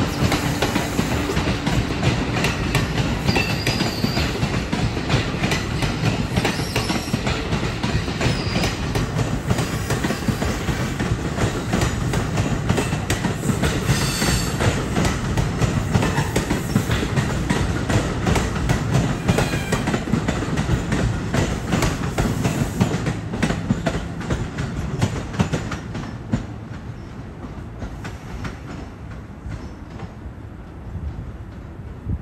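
New Jersey Transit MultiLevel bilevel commuter coaches passing close by: a steady rumble with wheels clicking over rail joints and a few short wheel squeals. The sound fades over the last several seconds as the rear cab car goes by.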